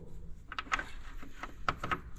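A few light clicks and taps of a small metal valve-removal socket being handled and fitted over a car's air-conditioning high-pressure service valve.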